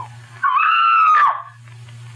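A single high-pitched scream lasting just under a second, rising slightly, then breaking off in a downward slide, over the steady low hum of an old radio recording.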